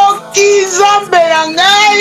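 A high voice singing long held notes, in the manner of a worship song.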